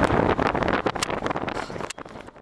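Wind buffeting the microphone on a boat over open water, in uneven gusts that grow fainter toward the end.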